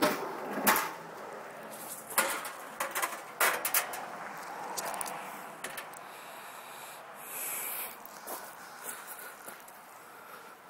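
Slide-out two-burner stove of a travel trailer's outside kitchen being pulled out of its cabinet and its cover flipped open: several clunks and clicks in the first few seconds. A short hiss follows about seven seconds in.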